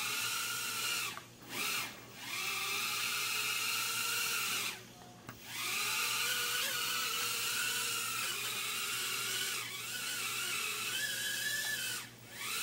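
Micro quadcopter drone's tiny motors and propellers whining with a high, wavering pitch as the throttle changes. The whine stops briefly about a second in and around two seconds, then drops out for about a second near five seconds in before starting again.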